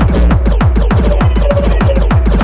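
Hard tekno track with fast, driving kick drums and repeated falling bass hits over a steady low hum.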